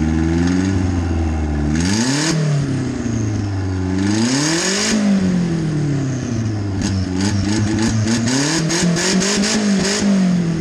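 Turbocharged Nissan Bluebird engine, venting through a dump pipe poking up through the bonnet, revved three times while stationary: two quick blips, each with a rush of air at the top, then a slower climb to higher revs with a rapid crackling chatter near the end before it drops back.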